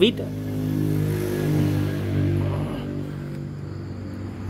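An engine humming steadily, louder for the first three seconds and then fading.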